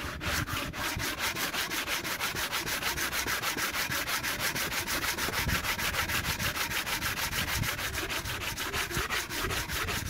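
Cast-iron exhaust manifold's mating face being sanded by hand with coarse abrasive paper on a sanding block, in fast, even back-and-forth strokes that rasp steadily. This is the slow job of truing the rusted, pitted face flat so that it will seal.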